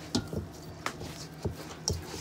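Hand kneading and pressing stiff cornmeal dumpling dough in a stainless steel mixing bowl: about five soft, irregular knocks and squishes as the dough is worked into a ball.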